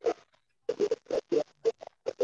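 Computer keyboard typing: an irregular run of short, sharp key clicks, about ten in two seconds.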